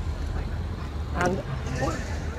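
A steady low rumble runs underneath, with a man's voice heard briefly and faintly about a second in.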